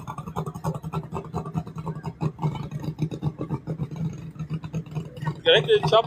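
Engine of a turbocharged VW Golf Mk2 drag car running at low revs, a steady low note with a fast, even pulse.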